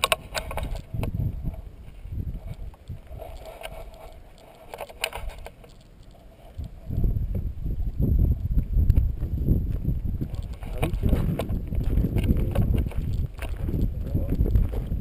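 Wind buffeting the microphone of a pole-mounted action camera, a loud rough low rumble that sets in about halfway through, with faint voices before it.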